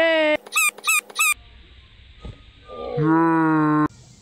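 High-pitched vocal calls: a short rising call, then three quick squeaky yelps, then after a pause one long held note near the end.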